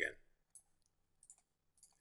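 A few faint, sharp computer mouse clicks, spaced irregularly, as objects are clicked on to select them.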